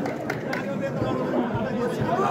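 Crowd chatter: many spectators talking at once, with a couple of short knocks about a fifth and a third of a second in.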